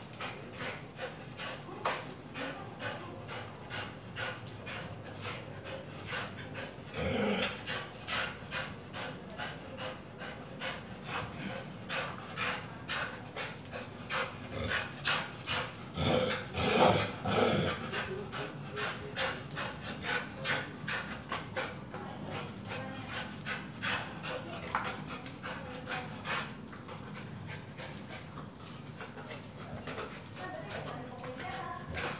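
A pitbull panting quickly and rhythmically as it tugs on a rubber tyre ring, with two louder outbursts from the dog, one about a quarter of the way in and a longer one just past halfway.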